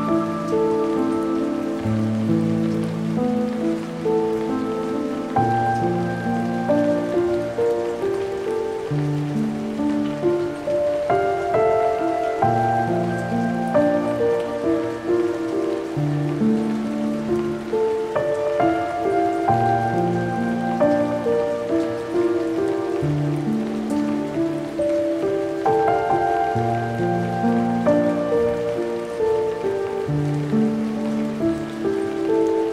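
Slow, melancholic solo piano in low held chords and a simple melody, with a steady rain sound layered underneath.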